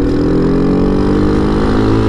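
Boom Vader 125cc single-cylinder four-stroke engine pulling in gear, its revs climbing slowly and steadily. It is running without an exhaust system fitted.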